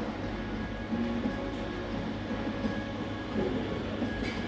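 Coffee shop ambience: a steady low hum with soft background music over it.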